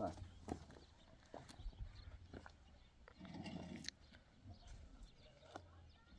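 Faint footsteps and light knocks of a man stepping along steel lattice roof joists, with a faint sheep or goat bleat a little past the middle.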